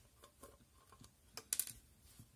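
Small light clicks of a precision screwdriver and tiny screws being worked out of an oscilloscope's metal end cap, with a couple of louder clicks about one and a half seconds in.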